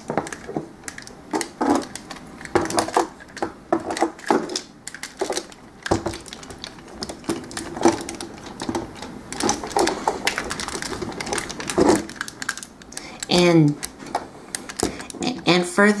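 Joints and parts of a Transformers Masterpiece Optimus Prime toy clicking and knocking as the front wheel sections are rotated around by hand, many small irregular clicks.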